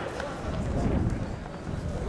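Indistinct voices talking, with a low rumble swelling about half a second in.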